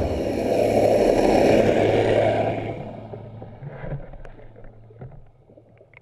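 Motorboat heard from underwater: a steady low propeller hum with rushing, churning water, loudest for the first couple of seconds and then fading out. Faint bubbling pops and clicks follow near the end.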